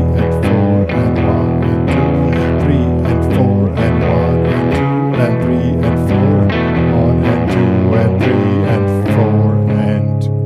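Epiphone Les Paul electric guitar playing a fast twelve-bar shuffle blues riff in E, swung eighth-note boogie pattern on the low strings, with regular percussive hits of a beat behind it.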